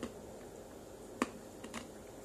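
Close-mic chewing of chicken tenders: a few sharp wet mouth clicks and smacks, the loudest just over a second in and two softer ones just after, over a faint steady hiss.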